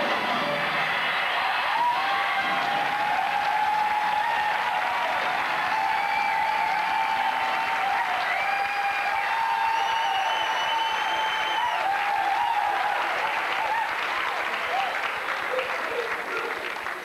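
Audience applauding and cheering steadily, with a few held tones of music or voices above the clapping, thinning out near the end.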